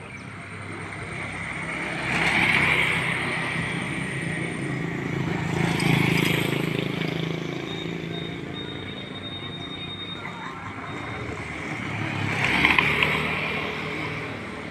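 Motorcycles passing on the road, their engines swelling up and fading away three times: about two seconds in, around six seconds, and near the end.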